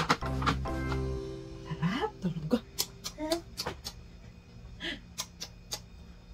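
Soft background music with a few short voice sounds that slide upward in pitch in the middle, and a run of sharp clicks through the second half.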